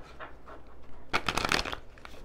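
Deck of tarot cards being shuffled by hand: faint card rustles, then a brief rapid flutter of cards a little past halfway.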